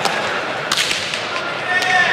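Three sharp cracks of a hard leather pelota ball in play, one at the start, one under a second in and one near the end: the ball being struck bare-handed and hitting the front wall and floor of the court.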